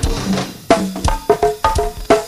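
Go-go band playing live: drum kit with bass drum and snare, plus pitched percussion, in a steady groove of sharp hits about three a second.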